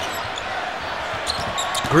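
Basketball being dribbled on a hardwood court, a few faint bounces over the steady noise of a large arena crowd.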